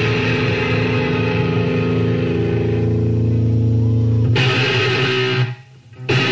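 Live recording of a punk rock band: electric guitar and bass hold a steady ringing chord for about four seconds, then the sound changes and drops out sharply about five and a half seconds in before loud electric guitar chords come back in, as one live song ends and the next begins.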